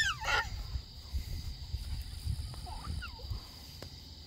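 Night insects keep up a steady high trill while a small child gives a short, high rising squeal at the start, with a few faint vocal sounds about three seconds in.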